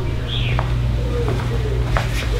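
A loud, steady low hum. A short falling chirp sounds within the first second and a sharp click near the end.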